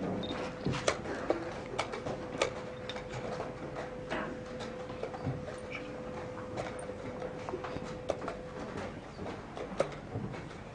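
Sharp clicks and knocks at irregular intervals from a fast blitz chess game: pieces set down on the board and the chess clock's buttons being pressed.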